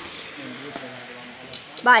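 Speech: low, faint voices, then a loud spoken exclamation near the end, over a steady background hiss.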